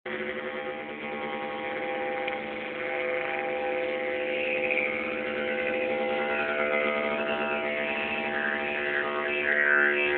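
Didgeridoo played with a continuous, steady drone on one pitch, its overtones sweeping up and down as the player shapes the sound, and growing a little louder near the end. Recorded through a cellphone microphone, so it sounds thin and dull at the top.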